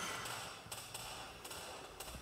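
Quiet room hiss with a few faint, short clicks.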